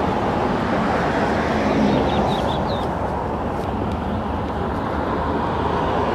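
Steady road-traffic noise with no rise and fall, and a few faint bird chirps about two seconds in.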